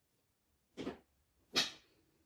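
Blue heeler puppy giving two short vocal sounds while playing with her rubber toy, the first just under a second in and a louder one near the end.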